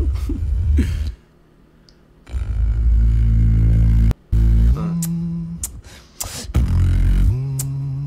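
Beatboxing: deep, sustained bass sounds with a hummed pitched line that steps up and down over them, and sharp snare-like clicks in the second half. About a second in, the sound drops out for roughly a second.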